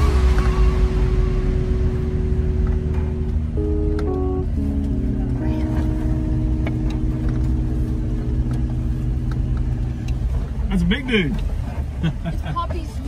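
Low cabin rumble of an off-road vehicle driving slowly over a dirt trail, under music of held chords that change a few seconds in. A voice is heard briefly near the end.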